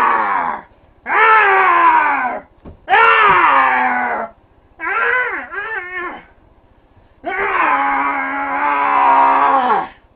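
A man screaming wordlessly in rage: a string of long, hoarse yells of a second or more, several falling in pitch at the end. Two shorter cries come in the middle, and the last and longest holds steady for over two seconds.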